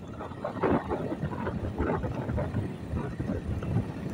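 Road and wind noise of a moving vehicle, with indistinct voices talking throughout.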